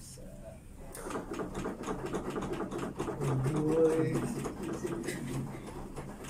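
A CPR training manikin clicking in a quick, steady rhythm under chest compressions, starting about a second in. The manikin's clicker sounds when a compression goes deep enough.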